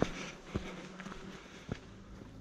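Footsteps on a dry dirt woodland path: a few soft steps about half a second apart at walking pace.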